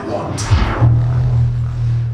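Dark-ride show soundtrack: a sharp hit with a quick falling sweep about half a second in, then a deep, steady low drone under music.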